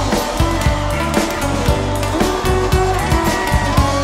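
Live band music at a concert: a steady beat with heavy bass, and a high note that slides up in pitch near the end.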